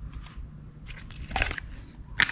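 Handling noise from a distributor turned over in the hands: faint rubbing and light clicks from its aluminium housing and plastic coil cover, with one sharper knock about one and a half seconds in.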